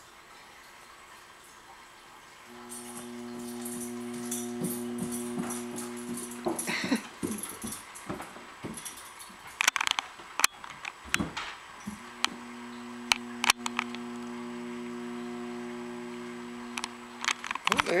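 Electric treadmill motor running with a steady hum; it starts a couple of seconds in, stops at about six and a half seconds, and starts again at about twelve seconds. A few sharp clicks fall in the gap between the two runs.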